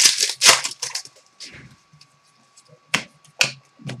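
Foil trading-card pack wrapper crinkling and tearing open in a loud burst at the start, then quieter rustling of cards and wrapper, with two sharp clicks about three seconds in.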